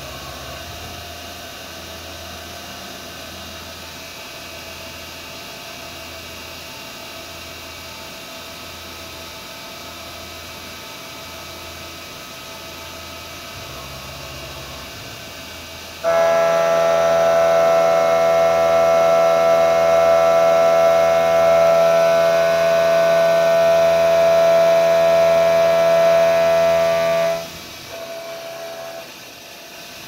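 Okuma Cadet Mate CNC mill plunge milling a billet: a steady cutting noise, then about halfway through the cutter bites in with a sudden, loud, steady droning tone that drops away a few seconds before the end.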